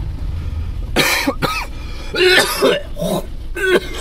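A man coughing hard in a run of rough coughs, starting about a second in and coming in several fits, over the low hum of a car's engine inside the cabin.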